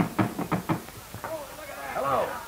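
Quick knocking on a door, about five raps, followed by a voice starting about a second and a half in.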